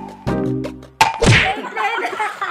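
An edited-in sound effect: a sharp hit with a ringing, pitched tone that fades, then starts again. About a second in, a hand slaps the pool water with a splash, followed by voices.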